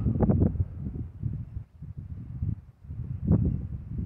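Wind rumbling on the phone's microphone in uneven gusts, dropping away briefly in the middle.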